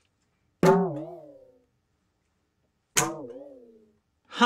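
Two finger snaps, each a sharp crack followed by a wavering, slightly falling musical tone that fades over about a second, like a comedic drum sound effect. The snaps are meant to make the egg float and have no effect.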